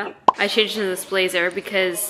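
A woman's voice speaking, with one short, sharp pop about a quarter of a second in.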